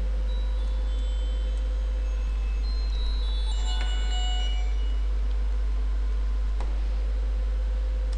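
Steady low electrical hum in the recording, with a few faint, short, high-pitched tones scattered around the middle.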